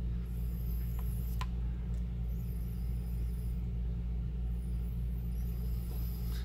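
A steady low electrical-type hum throughout, with faint sniffing at an open e-liquid bottle in a few separate breaths in. Two small clicks come about a second in.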